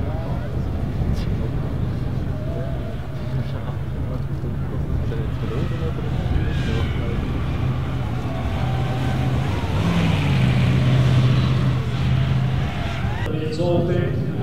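The air-cooled V8 of a 1947 Tatra 87 running as the car drives on packed snow, revs rising about ten seconds in and loudest shortly after. Voices sound in the background, and the engine sound cuts off just before the end.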